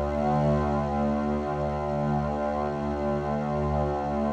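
A single low, cello-like note held steadily on an Arturia Pigments 4 patch built from a bowed acoustic string sample. Granular playback sustains the sample so the note does not end, with slight slow swells in level.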